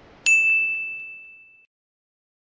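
A single bright ding from an outro logo sting: one sharp strike about a quarter second in, ringing on one clear tone and fading away over about a second and a half.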